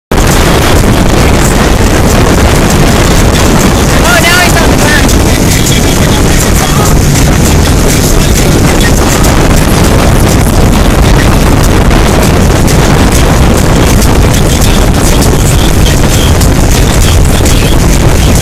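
Motorboat running at speed under its outboard motor, with wind buffeting the microphone and the wake rushing, a loud, steady roar throughout. A brief voice calls out about four seconds in.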